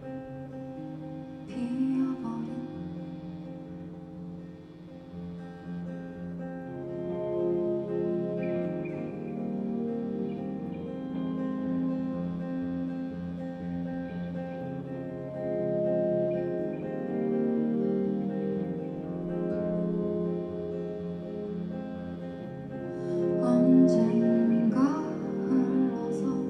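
Acoustic guitar playing an instrumental passage of a song, notes and chords ringing on. A woman's voice comes in briefly near the start and again near the end.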